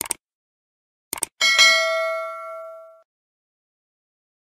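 Subscribe-button animation sound effects: quick mouse clicks at the start and again about a second in, then a notification bell ding with several tones that rings out and fades over about a second and a half.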